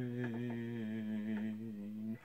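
A man humming one long, low held note with a slight waver in pitch.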